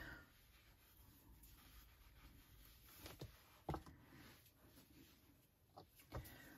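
Near silence with faint rustling and a couple of soft taps as yarn is handled and pulled out from the centre of a yarn ball.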